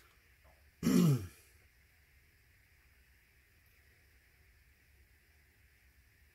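A man briefly clears his throat about a second in, a short sound falling in pitch. After that, only faint room tone.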